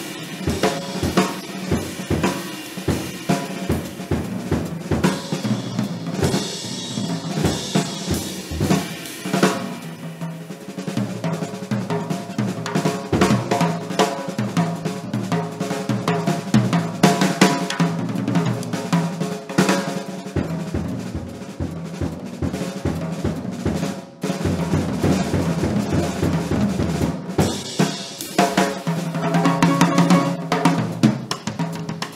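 Unaccompanied jazz drum kit solo: snare, bass drum and hi-hat played in a busy, irregular pattern with rolls and rimshots, with a brief drop in loudness a little after the middle.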